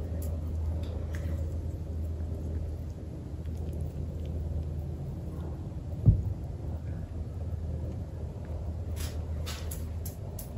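A caulk-coated brick is lowered into a clear plastic tub of water, with one dull thump about six seconds in as it settles and the hands press on the tub. A steady low rumble runs underneath.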